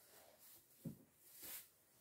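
Near silence, with faint rustling of hands handling a small crocheted yarn piece: a soft tick a little under a second in and a brief rustle about one and a half seconds in.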